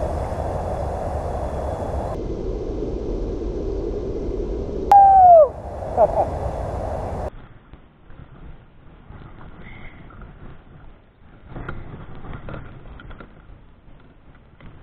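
Steady rushing of moving river water and wind on an action camera as a kayak heads into a riffle, with a short, loud falling shout about five seconds in. About seven seconds in, the sound drops to faint, uneven sloshing of water around a drifting kayak.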